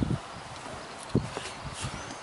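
A few soft, short knocks over a quiet outdoor background.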